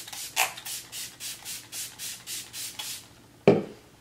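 Fine-mist pump spray bottle of Smashbox Primer Water sprayed in quick repeated pumps, about four short hisses a second for about three seconds. A single louder thump comes about three and a half seconds in.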